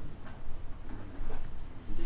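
Computer mouse scroll wheel ticking through its notches as the spreadsheet scrolls, over a steady low hum.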